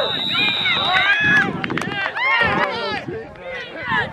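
A referee's whistle sounding one long steady blast that stops about a second in, over spectators and players shouting and cheering.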